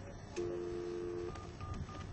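Gate telephone keypad being dialled: a steady two-note tone holds for about a second and stops, then three short touch-tone key beeps follow.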